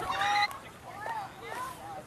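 A loud, high-pitched shouted "okay" from a spectator lasting about half a second, followed by scattered faint shouts and calls.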